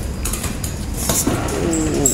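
Footsteps climbing a steel staircase, with light metallic clinks over a steady low rumble. A brief wavering voice-like sound is in the background in the second half.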